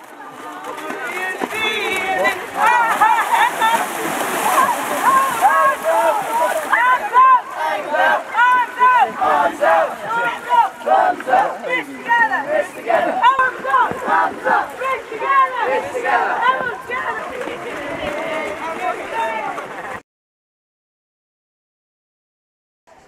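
Many children's voices shouting and yelling over one another, with splashing water. The sound cuts off abruptly about two seconds before the end.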